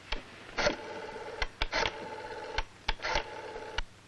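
Rotary desk telephone being dialled: sharp clicks from the dial, with a steady line tone heard between them.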